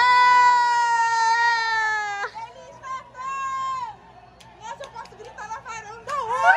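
A loud, long held vocal call of about two seconds, sinking slightly in pitch, then a shorter, quieter call about a second later. A few faint pops follow near the end.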